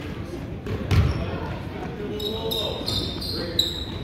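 A basketball bouncing hard on a hardwood gym floor about a second in, over the chatter of spectators. In the second half come several short, high, shrill sounds.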